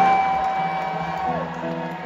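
A long whooping cheer from the crowd: one held 'woo' that slides up, holds, then falls away about halfway in. Then the live band's guitars come in with steady ringing notes.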